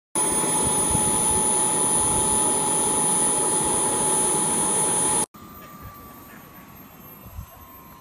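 A radio-controlled Honda Jet model's jet engines running close by with a loud, steady high whine. After a sudden cut about five seconds in, the whine is heard far off and much quieter, slowly dropping in pitch.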